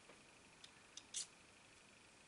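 Near silence, broken by three faint short clicks of small plastic RC car parts being handled in the fingers: one before a second in, one at about a second, and a slightly louder one just after.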